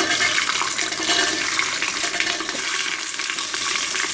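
Whole peeled shallots dropped into hot oil in a pressure cooker, starting a sudden loud sizzle that goes on as a steady frying hiss.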